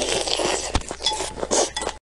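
Close-miked crunchy, wet chewing of a piece of red onion soaked in chili broth, with a sharp knock about three quarters of a second in.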